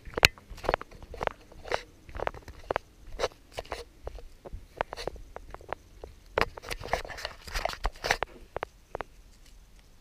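Irregular sharp clicks and knocks, roughly two a second, picked up by a GoPro Hero 4 Black as the person carrying it walks. This is the camera's faulty clicking noise, which is heard better while walking.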